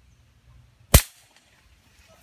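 A single sharp shot from a scoped rifle, fired once a little under a second in.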